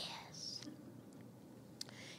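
A woman's quiet, breathy laugh that fades out early, leaving faint room noise with a small click near the end.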